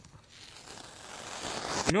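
Rustling handling noise of objects rubbing close against the phone's microphone, growing steadily louder, ending in a click just before a voice.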